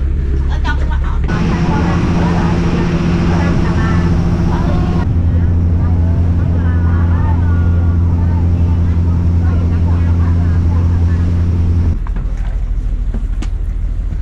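Small passenger boat's engine running steadily under way, a low even drone with voices faintly over it. The drone stops suddenly near the end.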